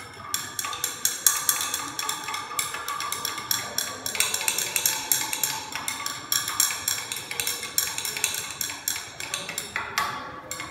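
Glass stirring rod clinking rapidly and repeatedly against the inside of a glass beaker while a solution is stirred, with a faint ringing from the glass.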